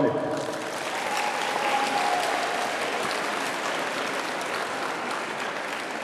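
Audience applauding: steady clapping from many hands that starts as soon as a name is announced and tapers slightly toward the end.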